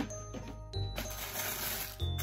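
Background music with a steady bass line; from about a second in, tissue paper rustles as it is handled inside a shoe box.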